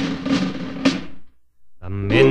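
Music: two drum strikes with a ringing decay, about half a second apart, die away into a brief silence. Near the end the next piece of music begins.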